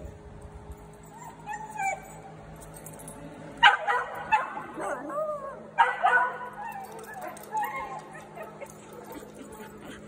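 Small dogs barking and yipping with some whining, the loudest sharp barks coming about four and six seconds in.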